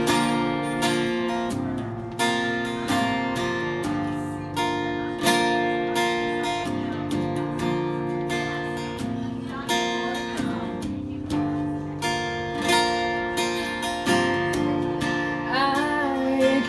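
Acoustic guitar strummed in steady chords: the instrumental intro of a song. A singing voice comes in near the end.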